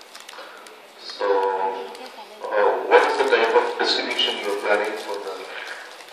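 Indistinct talking that the transcript does not catch, in a short stretch about a second in and then a longer, louder stretch of about three seconds.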